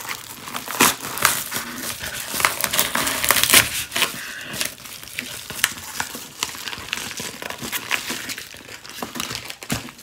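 Yellow padded paper envelope being cut open with a serrated knife and handled. It makes a dense run of crinkles and crackles, busiest in the first four seconds, then softer, sparser rustling.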